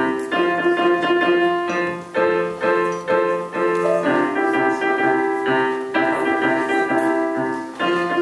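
Roland FP-4 digital piano played as a solo, a tune in firm chords and melody notes that change about every half-second to a second.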